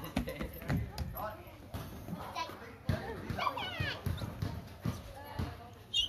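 Hollow thuds of children's feet and hands on a playground slide as they scramble up it, mixed with children's voices, a high child's voice clearest about halfway through.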